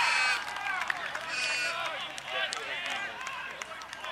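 Indistinct shouting and calling of several voices across an open playing field, with no words clear, loudest at the start and easing off slightly after about half a second.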